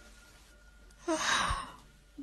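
A woman yawning: one breathy out-breath about a second in, lasting under a second.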